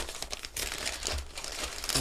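Gift packaging crinkling as a present is handled and opened.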